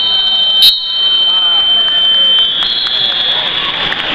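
A high, steady electronic tone from a scoreboard or match-timer buzzer, held for about two and a half seconds. A short, loud crack cuts in just under a second in, over voices in the hall.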